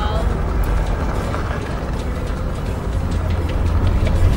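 Car driving slowly on a dirt track, heard from inside the cabin: a steady low engine and road rumble.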